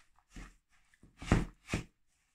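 A hand pressing and mixing a crumbly dough of crushed hazelnut wafers and chocolate spread in a plastic bowl: three short, soft squishing crunches, the last two close together in the second half.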